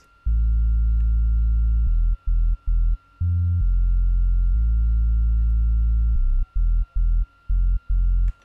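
Deep synth bass from FL Studio's GMS synthesizer on its Pure Bass preset, playing a bassline pattern on its own. It has two long held notes, each followed by a run of short stabs, with one higher note about three seconds in.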